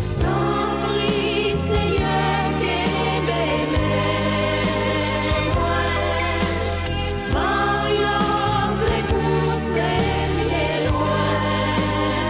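Gospel song: several voices singing together over a band with steady bass and percussion.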